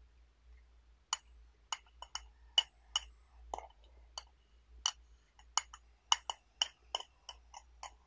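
Small metal spoon clinking against the inside of a glass tea pitcher while scooping out wet, spent tea leaves: about fifteen sharp, ringing clinks at an irregular pace of roughly two a second.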